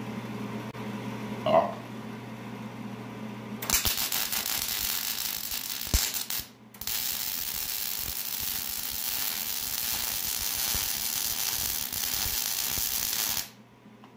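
MIG welder arc crackling steadily as weld beads are laid on a snowblower's hex shaft to build up material: a run of about three seconds, a brief break, then a longer run of about seven seconds that cuts off abruptly near the end. A single sharp knock comes about a second and a half in, before the arc strikes.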